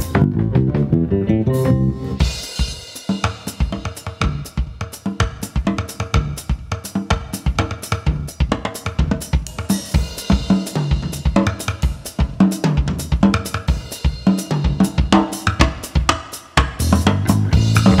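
A drum kit played at a fast, busy pace: kick drum, snare, hi-hat and cymbal strokes, typical of a live soundcheck. For the first two seconds a few low pitched notes are heard before the drumming takes over.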